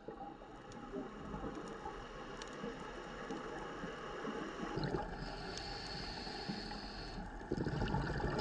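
Muffled underwater ambience picked up by a camera in its housing: a steady hiss and rumble, with a faint high whine from about five seconds in, and growing louder just before the end.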